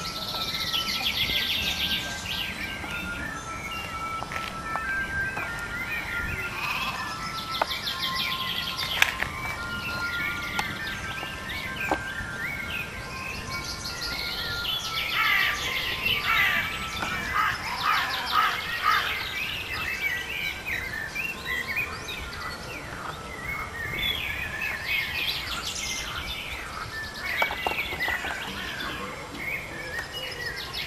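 Several songbirds singing and chirping together, a chorus of short calls and trills that is busiest in the middle and near the end, over a low background rumble.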